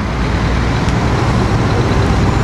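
Road traffic: motor vehicles passing on the highway, a steady engine rumble with tyre hiss that grows slightly louder.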